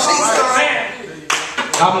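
Hand claps from a church congregation, with voices calling out. The voices come in the first part, and a few sharp claps follow in the second half.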